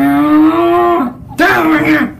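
A child's voice giving two long, drawn-out wordless cries: the first held about a second with its pitch rising slightly, the second shorter with a bend in pitch.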